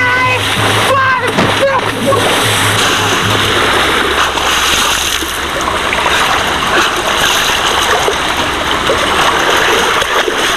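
A person splashing into shallow lake water, then continuous splashing and churning as they thrash and wade through it. Shouting and a low hum are heard over the first couple of seconds.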